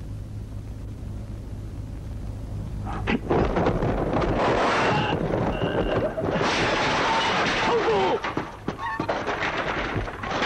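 Fight-scene sound effects: after a few seconds of low hum, a sudden loud crash about three seconds in, then a dense clatter of woven baskets and a wooden cart being smashed and knocked about, with blows and short grunts or shouts.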